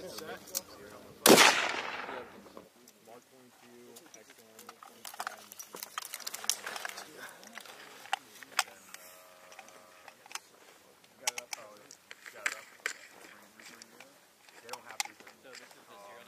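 A scoped bolt-action sniper rifle fires once about a second in, the shot trailing off in an echo over the next second. After that come scattered fainter sharp cracks and clicks, with faint voices.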